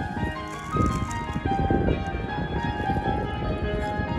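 Amplified electronic keyboard played by a street musician: a melody of held notes, changing about every half second, over a low rumble of outdoor noise.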